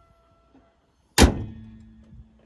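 The bonnet of a Mazda CX-60 pushed down and latched shut about a second in: one sharp, loud thud, followed by a short fading metallic ring.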